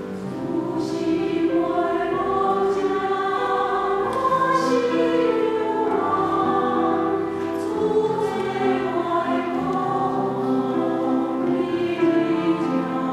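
Mixed church choir singing a slow hymn in parts, accompanied by grand piano, with sung notes held and gliding between words.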